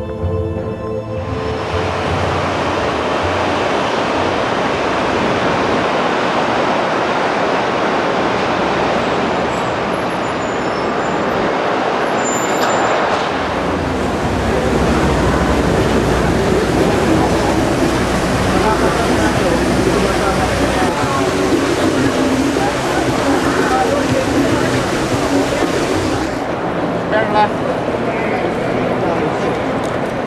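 Busy city ambience of steady traffic and crowd chatter, which takes over from a sombre music bed about a second in. The noise changes abruptly near the middle and again near the end, as it cuts between different street and indoor crowd scenes.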